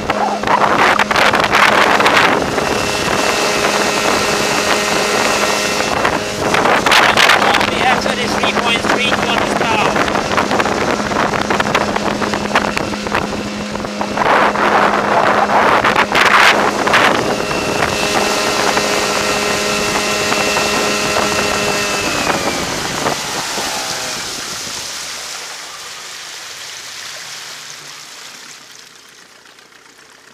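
An 8 hp outboard motor running at full throttle, driving an inflatable canoe at top speed, with bursts of rushing water and wind noise over its steady note. A little over twenty seconds in, the engine note drops as the throttle is eased off, and the sound fades away.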